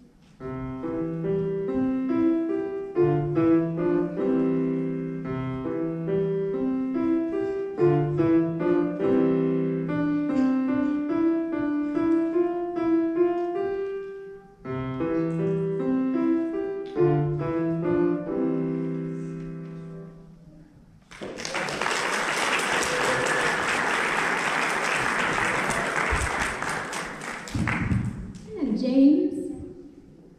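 A grand piano is played solo in a lively dance-like piece, which ends about twenty seconds in after a brief pause partway through. Audience applause follows for several seconds, and a voice is heard near the end.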